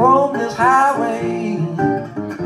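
National resonator guitar played fingerstyle as a blues fill between vocal lines: picked bass notes under treble notes that slide up in pitch and ring on.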